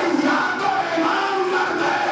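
A man's voice crying out in an impassioned, chant-like recitation through a microphone and PA, with a crowd of voices behind it.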